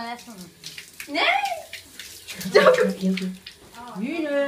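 Water from a garden hose splashing and spattering, with voices calling out twice over it.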